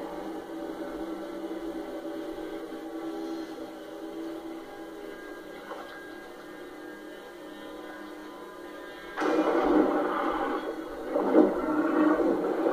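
Film soundtrack played from a television and heard in a small room: a low, held music drone, then about nine seconds in a sudden loud burst of rough, noisy sound that surges again near the end.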